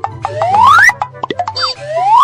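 Cartoon-style comedy sound effect laid over background music: a rising whistle-like glide that repeats about once a second, with a few quick clicks between the glides.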